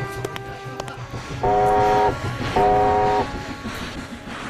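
Old car horn honking twice, two abrupt blasts of a steady chord-like tone, each under a second long.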